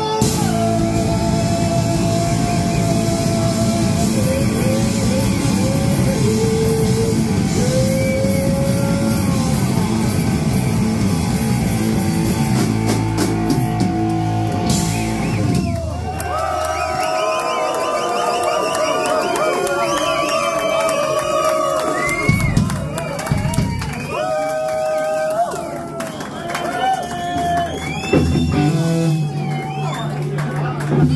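Live rock band with electric guitars and drums playing loudly. The song stops about halfway through, leaving shouting and cheering voices from the crowd.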